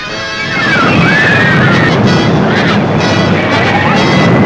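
Fairground ride noise on a newsreel soundtrack: a loud, dense wash with music mixed in. A few high cries glide up and down in the first couple of seconds.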